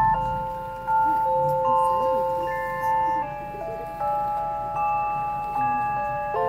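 Stage keyboard playing an instrumental passage of sustained chords, a new chord struck about once a second.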